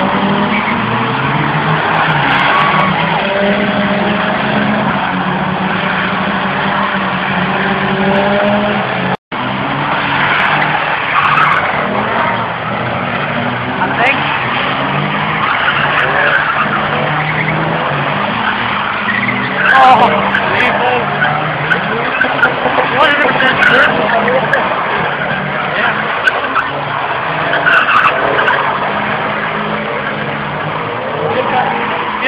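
Drift cars' engines revving hard while their tyres squeal and skid in long slides, with a brief break in the sound about nine seconds in.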